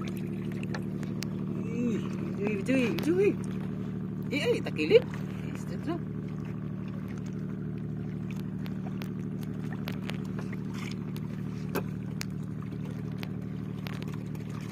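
A small boat engine running with a steady low drone. Voices rise and fall briefly from about two to five seconds in, and a few light clicks come from handling the fishing line.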